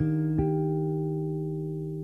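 Acoustic guitar's final chord: strummed at the start and again about half a second in, then left to ring and slowly fade as the song ends.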